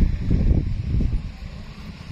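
Wind buffeting the microphone: an uneven low rumble that swells and falls, loudest in the first second and easing after.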